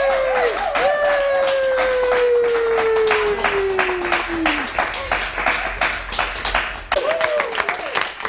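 A small group clapping, with high-pitched cheering: one long cheer falls steadily in pitch over about four seconds, and a short yell comes near the end.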